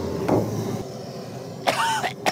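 An engine running steadily with a faint steady tone, then a man's brief loud shout near the end.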